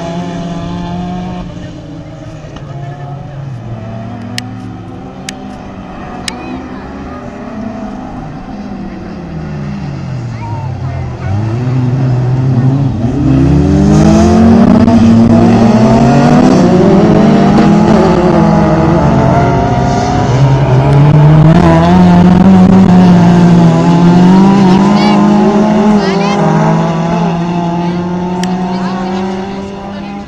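Several autocross cars racing on a dirt track, their engines revving up and dropping back through gear changes, with several engine notes overlapping. The sound swells to its loudest about halfway through as the cars pass close, then falls away near the end.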